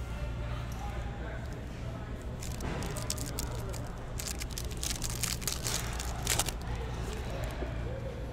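Foil wrapper of a Panini Select baseball card pack being torn open and crinkled: a run of sharp crackles from about two and a half seconds in until shortly before the end.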